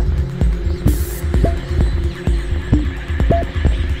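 Electronic dance music from a club DJ set: a pounding kick drum about two beats a second over a held bass line, with short synth stabs.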